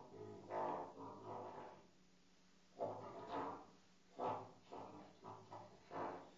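Trumpet played with a mute worked by hand at the bell, giving short muted notes in quick bursts. There is a pause of nearly a second about two seconds in, then a run of several brief notes.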